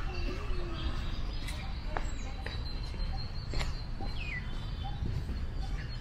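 Birds chirping and whistling in scattered short calls, one a falling whistle about four seconds in, over a steady low rumble with a few sharp clicks.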